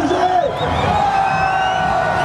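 A street crowd cheering and whooping over loud house music from a parade float's sound system, with long held tones sliding in pitch and a high warbling tone near the start.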